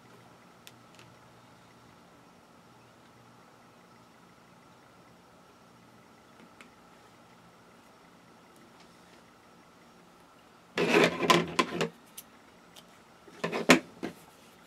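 Faint room tone with a low steady hum and a few soft ticks as cotton kite string is wound and tied around bunched T-shirt fabric. About eleven seconds in comes a short, much louder burst of sound, and near the end scissors snip the string.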